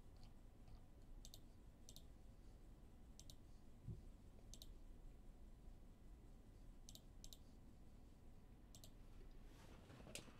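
Near silence with scattered faint, sharp clicks, a few in quick pairs, and one soft low thump about four seconds in.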